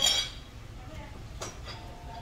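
Eating utensils clinking against china dishes: one loud ringing clink at the start, then two lighter clicks about one and a half seconds in.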